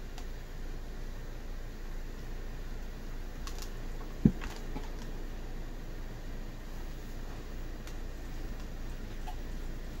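Hands handling a handkerchief and a steam iron on a towel: a few light clicks and one dull thump a little past four seconds in, as the iron is brought down onto the cloth, over a steady low hum.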